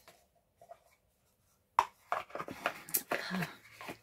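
Hands handling a small cardboard gift box and its packaging: a sharp click a little under two seconds in, then about two seconds of scratchy rustling and scraping.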